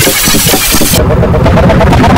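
Loud, distorted logo-jingle audio stacked from several pitch-shifted copies, with a rough, buzzing, engine-like texture. About a second in, the sound changes abruptly: the hiss drops away and a choppy run of layered tones takes over.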